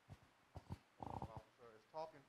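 Faint, distant voice of a person off the microphone answering a question, too quiet to make out, after a few soft knocks.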